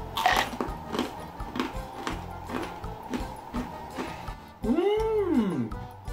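Crunching as a hard, sugared ginger sembei cracker is chewed, over background music. About five seconds in comes a single high pitched call that rises and then falls.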